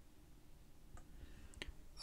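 Near silence: faint room tone with two faint clicks, one about a second in and a slightly stronger one near the end.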